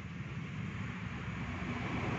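Steady background hum and hiss, with no distinct event.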